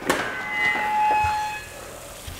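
Wall oven door pulled open: a sharp click as it releases, then a steady metallic squeal of a few fixed pitches for about a second, fading out before the end.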